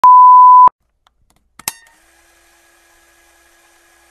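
A loud, steady electronic beep, one pure tone lasting well under a second. About a second and a half in comes a short sharp click, followed by a faint steady tone that hangs on.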